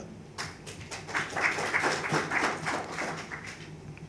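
Audience applause, a light spell of many hands clapping that dies away near the end.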